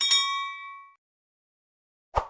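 Notification-bell sound effect: a click and one bright bell ding that rings with several overtones and fades out within about a second.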